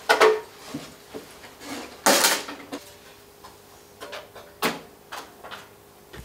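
Cabinet panels of a Peavey XR-1200 powered mixing console being handled and lifted off: a knock at the start, a longer scraping rattle about two seconds in, and a few lighter knocks near the end.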